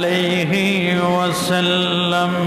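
A man chanting in a melodic, sung style, holding long steady notes that dip briefly in pitch about half a second in and again near the middle.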